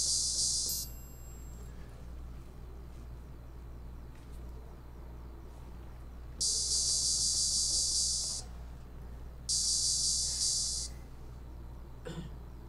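High, bright chime-like sample triggered from a Maschine Studio drum controller's pads and heard over the studio speakers. It rings three times: once fading just under a second in, once for about two seconds from around six and a half seconds in, and once for about a second from nine and a half seconds in, over a steady low hum.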